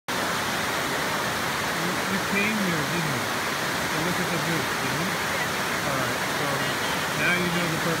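Steady rush of white water tumbling over rocks, with faint voices talking under it and a word spoken near the end.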